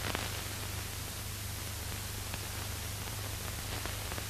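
Steady hiss with a low hum underneath: the background noise of an old film soundtrack, with a few faint ticks.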